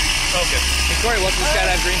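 People talking over a steady background of hiss and low rumble.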